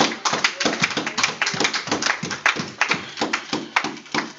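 Hand clapping in a room: quick, uneven claps, several a second.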